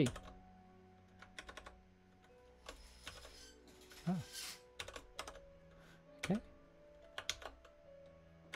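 Typing on a computer keyboard: several short runs of keystrokes with pauses between them.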